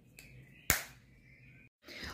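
A single sharp click about three-quarters of a second in, over faint room tone, followed near the end by a moment of dead silence where the recording cuts.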